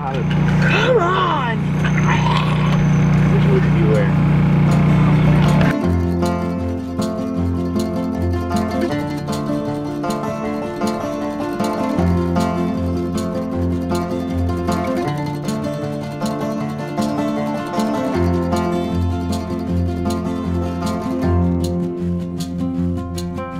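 A boy's drawn-out, zombie-like wailing voice over a loud low drone for about six seconds. That part cuts off suddenly and is followed by background music with plucked guitar.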